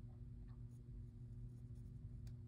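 Faint scratching of a pencil drawing lines on sketchbook paper, with a few light ticks of the lead, over a low steady hum.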